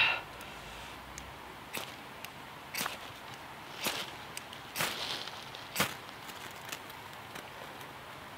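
Ferro rod fire steel struck with a metal striker: about five sharp scrapes roughly a second apart, with a few lighter ticks between, throwing sparks onto cotton-ball tinder.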